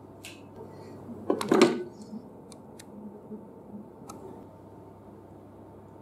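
Pushchair seat knocking and clattering against the metal chassis as its rear hooks are fitted into the seat-interface slots: a cluster of knocks about a second and a half in, then a few light clicks.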